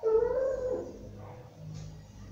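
A dog whimpering: one short, wavering whine that starts suddenly and fades within a second.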